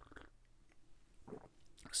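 Faint sips and swallows of coffee from a mug, two soft gulps about a second apart.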